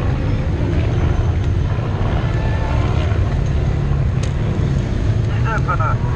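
Steady, loud low rumble of race-convoy vehicles running close by, with a single sharp click about four seconds in.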